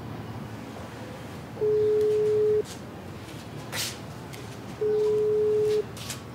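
Telephone ringback tone heard through a phone: two steady one-second beeps about three seconds apart, the line ringing while the call waits to be answered.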